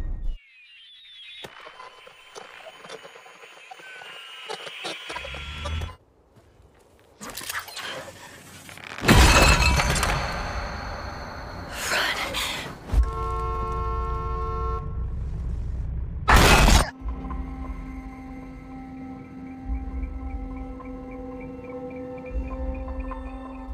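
Film soundtrack of tense music broken by several sudden loud crashes, the loudest about nine seconds in, with a brief silence just before.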